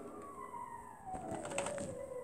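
A single tone slides steadily down in pitch across the whole two seconds, with a few sharp computer-keyboard key clicks in the second half as digits are typed.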